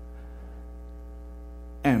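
Steady electrical mains hum: a low drone with a row of faint, evenly spaced higher tones above it. A man's voice starts just before the end.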